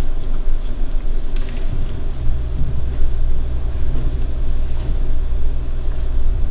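A low, steady rumble that grows louder about two seconds in, with a few faint clicks above it.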